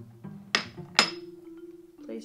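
Two sharp clinks, about half a second apart, as a gold-trimmed ring dish is set down and knocked, the second one ringing briefly; background music plays underneath.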